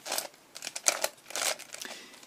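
A plastic 3x3x3 Mix-up Plus puzzle cube being turned quickly by hand to scramble it: a string of irregular clicks and short scraping turns.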